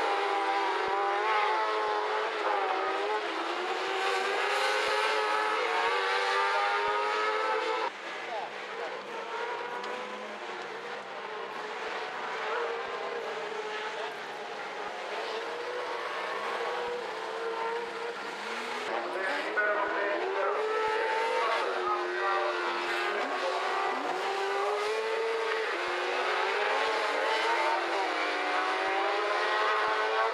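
Several rallycross buggy engines racing together, their overlapping notes revving up and down through a corner. About eight seconds in the sound drops suddenly, then builds back up as the cars come closer again.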